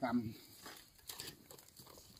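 Hands breaking and scraping through dry, cracked clay soil, with faint crumbling clicks of loose clods. A brief voice sounds at the very start.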